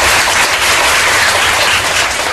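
Audience applauding: a loud, steady patter of many hands clapping.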